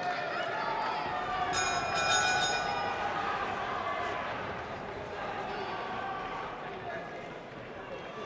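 Shouting voices from around a boxing ring, with a brief high metallic ringing about one and a half seconds in.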